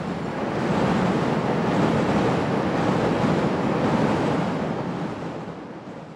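An elevated train rolling past on its steel structure, a steady rushing rumble that swells about a second in and fades away over the last two seconds.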